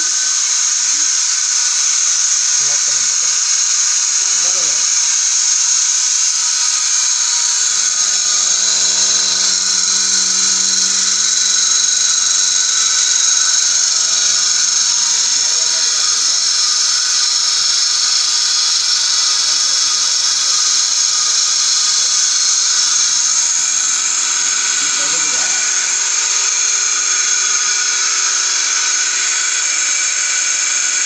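A milking machine's vacuum pump running steadily with a loud, high hiss and whine. A lower steady hum joins in for a stretch in the middle.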